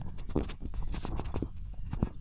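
Wind rumbling on the microphone, with scattered clicks and rustles from the camera being handled, and one short spoken word.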